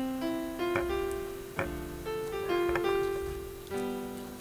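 Background piano music: a slow run of single sustained notes, each struck and left to ring.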